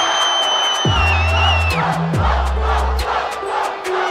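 A hip-hop beat plays with deep, sliding 808 bass hits and steady hi-hats while a live crowd cheers and shouts. A long, high whistle rises over the crowd in the first two seconds and drops away.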